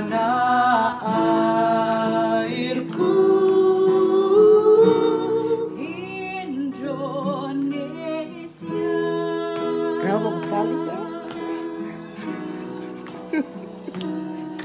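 A song sung over instrumental accompaniment: a wavering vocal melody above steady held chords.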